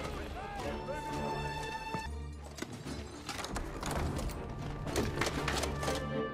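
Film soundtrack: a score with held notes runs under sound effects. The first second brings a string of short chirping calls, the sound changes abruptly about two seconds in, and scattered knocks and clatter follow.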